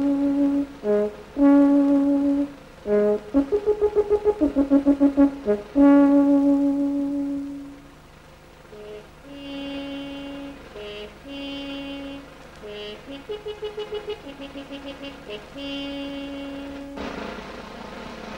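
Brass music of held notes and quick runs of repeated notes, loud in the first half and softer from about eight seconds in.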